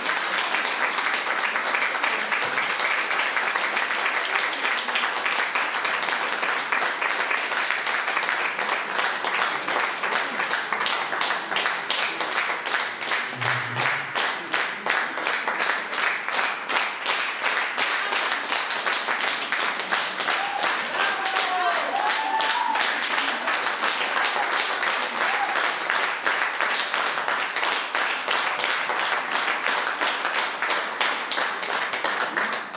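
Concert audience applauding, the clapping settling about ten seconds in into steady rhythmic clapping in unison.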